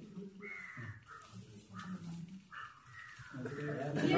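A crow cawing, four calls in about three seconds, the last one the longest.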